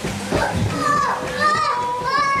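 A crowd of voices talking and calling out, with high children's voices that rise and fall, loudest in the second half.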